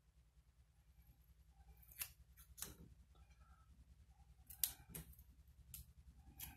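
Small scissors trimming a paper sticker: a handful of faint, sharp snips, a pair about two seconds in and a few more near the end.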